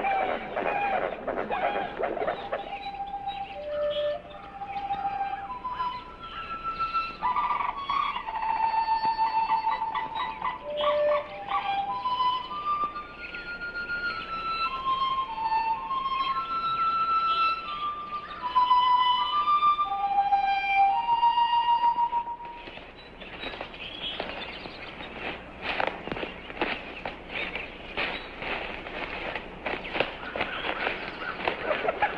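Film score: a slow solo flute melody of separate held notes at varying pitches. Near the end it gives way to a dense run of crackling clicks.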